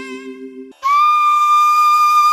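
A low held instrumental note fades out, then after a brief break a flute begins one long, steady high note a little under a second in.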